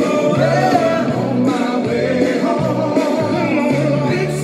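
Recorded gospel song playing, with a bass line stepping between notes under sung vocals; a woman sings along into a handheld karaoke microphone.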